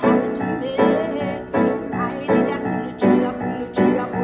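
Grand piano playing chords in a steady rhythm, one struck about every three-quarters of a second.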